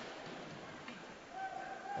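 Faint ice hockey arena ambience during play: a low, even rink noise, with a faint steady held tone coming in about a second and a half in.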